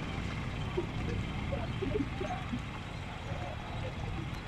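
Motorcycle riding slowly along an unpaved gravel road: a steady low rumble of engine, tyres and wind, with faint distant voices over it.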